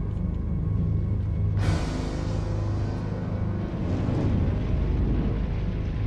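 Ominous film-score music over a steady low rumble, with a rush of noise swelling in about one and a half seconds in.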